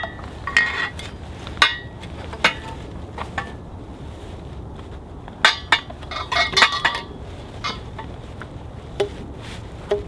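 Disc-O-Bed cot frame tubes clinking and knocking against each other as they are handled and slid into their carry bag, in irregular taps with a busier run of clinks midway.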